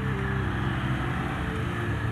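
Honda CBR250RR's 250 cc parallel-twin engine running steadily as the motorcycle cruises, mixed with road and wind noise.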